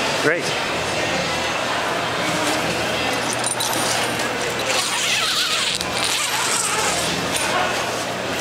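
Zipper on an inflatable bubble tent's vestibule door being pulled open, over steady hall noise with background voices.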